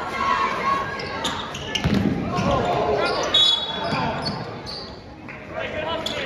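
Basketball bouncing on a hardwood gym floor, with spectators' voices echoing through the large hall.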